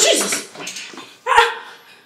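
A woman panting hard, out of breath, with a sharp voiced gasp about one and a half seconds in.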